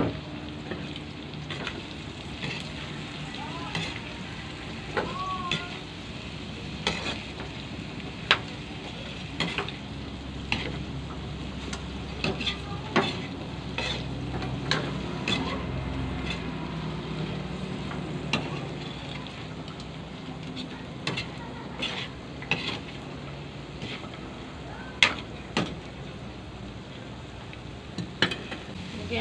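Green papaya strips and pork stir-frying in a wok: a steady sizzle, broken by irregular clicks and scrapes of a utensil against the pan as the vegetables are stirred.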